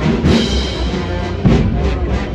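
A procession band playing a slow march, with a heavy drum beat landing about every second and a quarter under sustained tones.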